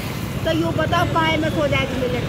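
An elderly woman talking in Hindi, with a steady low rumble of street traffic and motorbikes beneath her voice.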